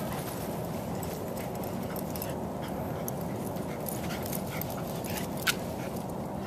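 A dog and a person moving quickly on grass: light scattered footfall ticks over a steady low rush, with one sharper click about five and a half seconds in.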